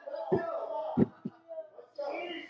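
Three dull thumps, one about a third of a second in, a louder one at about a second and a softer one just after, over a faint voice.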